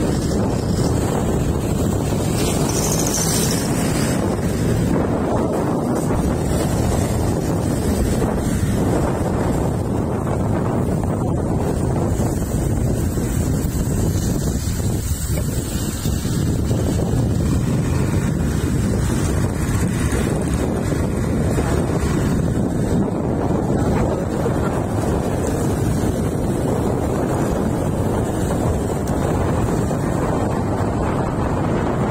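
Steady wind noise buffeting the microphone of a phone carried on a moving vehicle, with a low rumble of vehicle and road noise underneath.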